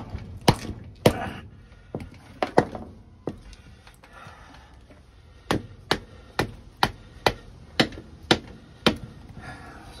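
Mallet striking the spine of a Mora knife, driving the blade into a chunk of firewood in a hard-use batoning test: sharp whacks, a few scattered ones at first, then after a short pause a steady run of about two a second.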